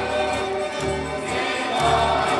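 Choir singing a Christian song with instrumental accompaniment and a steady bass line, played from a vinyl LP record.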